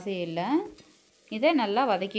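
Speech: a voice in two short phrases with a brief pause between them.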